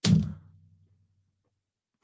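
A man's short, low "hmm" right at the start, then silence.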